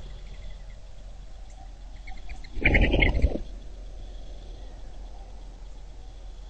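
A brief animal call, under a second long, about two and a half seconds in, over a steady faint background hiss.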